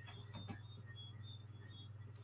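Faint room tone: a steady low hum with a few brief, faint high chirps.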